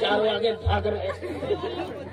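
People talking, their speech not made out, with a steady low hum underneath that grows much louder about two-thirds of a second in.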